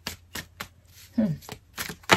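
Tarot cards being shuffled overhand by hand, each packet of cards landing with a short sharp click, several clicks with a gap about a second in.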